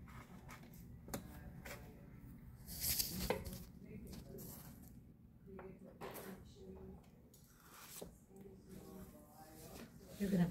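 Faint scraping of a taut wire tool cutting facets into the soft clay wall of a freshly thrown bowl on a potter's wheel, with small clicks and a brief louder hiss about three seconds in. Faint, indistinct voices in the room.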